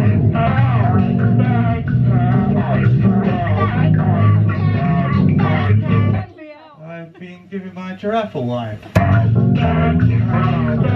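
Loud experimental electronic music from a keyboard synthesizer: a dense, bass-heavy repeating pattern. About six seconds in it drops out to quieter warbling sounds, then cuts back in with a sharp click about nine seconds in.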